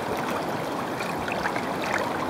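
Steady rush of flowing river water, with a few faint ticks.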